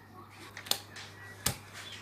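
Two light clicks of a metal spoon against a steel cup and tart while strawberry glaze is spooned onto a fruit tart, over a faint steady low hum.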